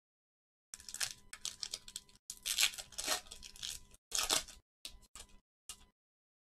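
A football trading card pack's wrapper being torn open and crinkled in the hands, a string of short tearing and rustling bursts, loudest about two and a half and about four seconds in.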